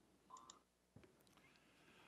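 Near silence, room tone, with a few faint clicks near the start; the sound drops out entirely for a moment about half a second in.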